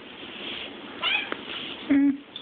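A baby kitten meowing: one short, high meow about a second in, then a louder, lower pitched cry right at the end.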